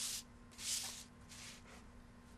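Faint paper rustles: hands sliding the stamped cardstock across the craft mat and lifting the rubber stamp off it, three short soft swishes.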